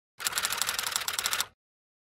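Logo sting sound effect: a rapid, even run of typewriter-like clicks, starting a moment in and stopping after just over a second.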